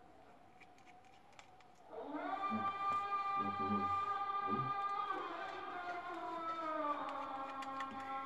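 Faint, short clicks of a precision screwdriver at the screws of a phone, then, about two seconds in, a much louder song with long held, sliding sung notes starts playing in the background.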